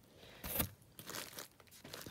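Packing material crinkling as hands rummage in a box of shredded paper and bubble wrap. There is a louder crunch about half a second in, then a few softer rustles.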